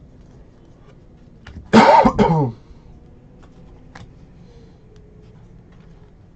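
A man coughs twice in quick succession about two seconds in. A few faint clicks of trading cards being handled sound around it.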